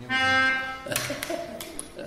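One held reed note, rich in overtones, sounded for just under a second to give the starting pitch before the singing, followed by fainter held tones and a few clicks.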